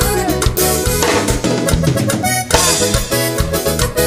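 Live tierra caliente band playing a fast dance tune: a reedy keyboard lead over electric bass and drum kit, with a steady beat.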